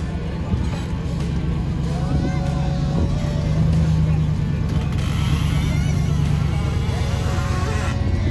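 Rock crawler buggy's engine running under load as it climbs over a rocky obstacle, its steady low note swelling a little around the middle, with crowd voices alongside.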